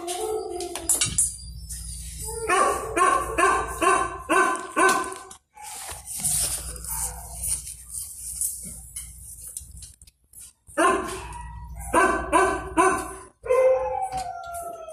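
Dog barking in two quick volleys of about half a dozen barks each, one a few seconds in and another near the end, with a pause between.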